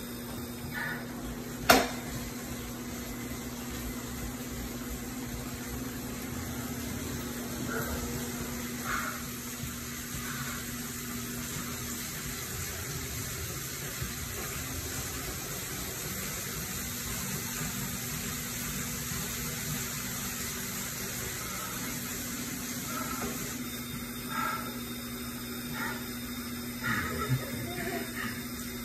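Steady whir and hum of an indoor bike trainer being pedalled, with one sharp click about two seconds in.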